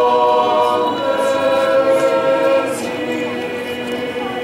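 A group of voices singing a hymn unaccompanied, in long held notes. The pitch shifts about a second in and again near three seconds in, and the singing grows a little softer near the end.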